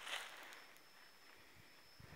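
Near silence outdoors: a brief rustle at the very start, then a faint steady high-pitched whine over quiet background hiss.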